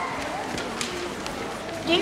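Footsteps of several children moving about a room, with faint scattered chatter.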